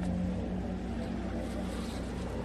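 Low, steady drone from a film soundtrack: a held deep tone over a constant low hum, with no dialogue.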